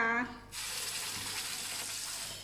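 A wet blended turmeric spice paste dropped into hot oil with whole spices in a wok sets off a steady sizzle. It starts suddenly about half a second in.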